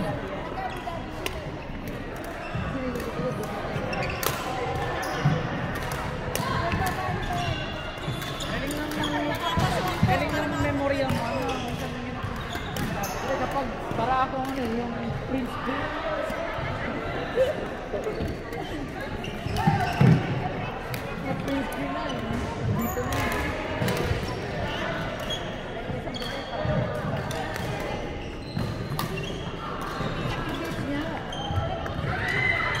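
Badminton doubles rally: sharp strikes of rackets on the shuttlecock and footsteps thudding on the wooden court floor, in a large hall. Voices talk in the background throughout, and a few heavier thuds stand out along the way.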